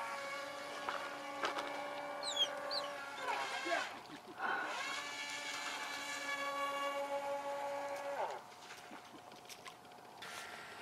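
A radio-controlled boat's motor whines at a steady pitch out on the water. It dips and climbs back up about four seconds in, then winds down a little after eight seconds.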